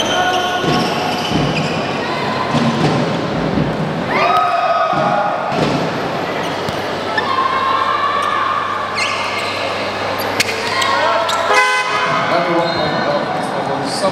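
Basketball bouncing on a hardwood court in a sports hall, over shouting voices, with several held horn-like toots a second or two long.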